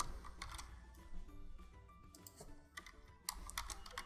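Typing on a computer keyboard: a run of soft key clicks, with a louder, quicker cluster of keystrokes near the end.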